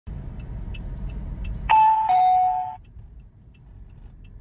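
A two-note descending electronic ding-dong from the car's driving-test scoring unit, signalling a 5-point penalty. It sounds a little under halfway through, over a low engine and road rumble that falls away as it starts.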